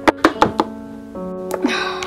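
Light knocks of a plastic toy figure being hopped along a desk, a quick run of them in the first half second and one more about a second later, over soft instrumental background music with held notes.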